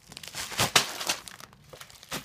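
Plastic packaging crinkling as it is handled, the zip-lock bags and bubble wrap of a parcel being moved about, with a louder rustle partway in before it dies down to a few light crackles.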